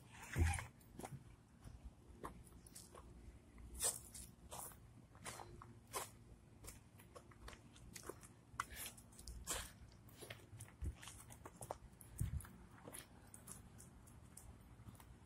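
Faint, irregular clicks and scuffs of a dog being walked on a leash over pavement: footsteps and leash rattle.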